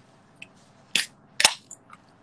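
Ring-pull soda can being opened: two sharp snaps about half a second apart.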